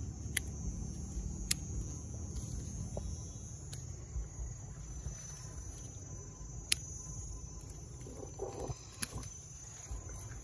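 Pruning scissors snipping off the shoot tips of a mai vàng (yellow apricot blossom) tree: about five sharp snips, a second or more apart. Insects chirr steadily in the background.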